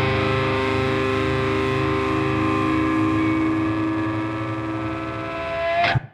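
The closing chord of a heavy metal track: distorted electric guitars held and ringing out, swelling briefly near the end before the song cuts off suddenly.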